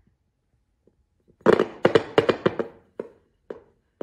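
Glass bottle spun by hand on a flat painted board, knocking against it in a quick run of knocks for about a second, then a few single knocks as the spin goes on.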